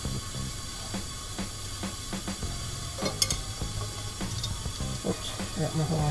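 Steady hiss of compressed shop air leaking past the piston rings of a Ford 460 V8 cylinder pressurised through the spark plug hole, the sign of blow-by on the rings. A sharp metal clink of tools about three seconds in.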